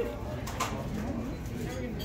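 Soft, low murmuring voices with room noise at a dining table; no clear words, and one small tick partway through.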